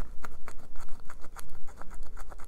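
A scratch-off coating on a paper savings-challenge card being rubbed off by hand: a quick run of short, uneven scratching strokes, several a second, close to the microphone.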